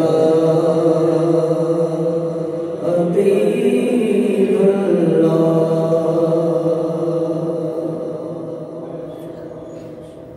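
A man's voice chanting an unaccompanied devotional recitation into a microphone, drawing out long melodic notes. His voice trails off over the last few seconds.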